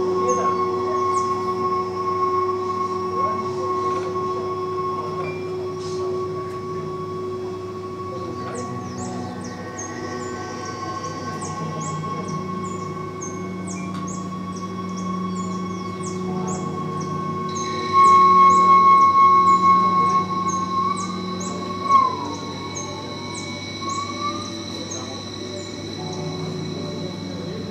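Ambient electronic soundscape of processed field recordings: steady held tones over a low hum, with rapid high chirps running throughout. About two-thirds of the way in, a louder high tone comes in, followed by a short sliding tone.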